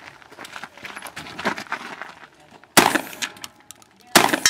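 A single loud gunshot about three-quarters of the way through, after a stretch of a few faint knocks and shuffling.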